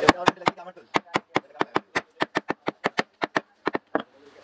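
A quick series of about twenty sharp wooden taps on a cricket bat as its broken handle is being refitted: a few strikes at first, then a steady run of about five a second.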